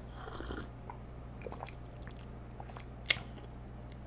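Sipping and swallowing from a mug, with small wet mouth clicks, then one sharp clack about three seconds in as the mug is set down.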